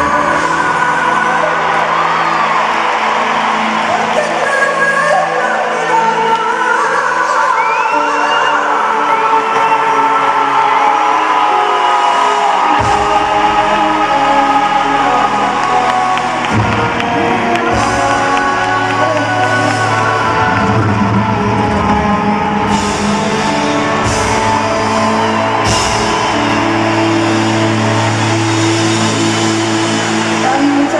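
Live pop music from an arena concert: a woman and a man singing a duet over the band, with whoops from the crowd.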